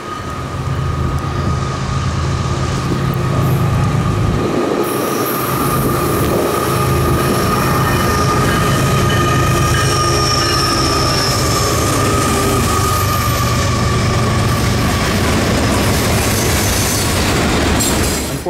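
A Florida East Coast freight train led by GE ES44C4 diesel locomotives passing close, its engines running and growing louder as it nears. Steady high-pitched wheel squeal from the curve runs under it.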